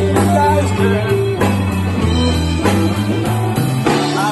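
Live electric blues-rock band playing: electric guitars, bass guitar, keyboard and drum kit, with a melodic lead line moving over sustained bass notes and regular drum hits.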